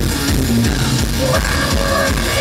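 Live rock band playing loud and continuously: electric guitar, bass guitar and drum kit.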